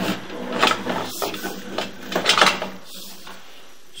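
Sewer inspection camera's push cable being fed quickly into a PVC drain, with irregular scraping and knocking as the cable and camera head rub through the fitting. The sound eases off after about three seconds.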